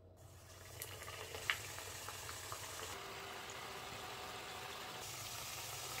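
Samosas frying in a pan of hot oil: a steady sizzle that builds over the first second, with a few sharp pops.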